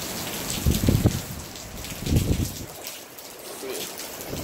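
Storm wind and rain: a steady rain hiss with two heavy gusts buffeting the microphone, about a second in and about two seconds in.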